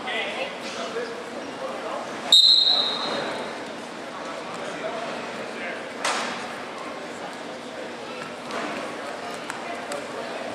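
Referee's whistle, one short shrill blast about two seconds in, starting the wrestling bout, over gym chatter. A sharp smack follows about six seconds in.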